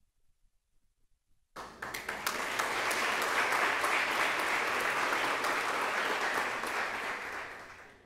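Applause from a crowd, starting suddenly about a second and a half in and fading away near the end.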